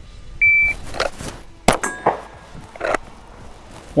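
A shot timer's start beep, then about 1.3 seconds later a single pistol shot, followed by a brief ring from the struck steel target.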